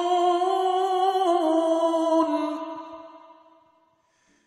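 A single voice chanting Quran recitation, holding a long melodic note with a small ornamental turn in pitch about a second in, then fading away over the last two seconds.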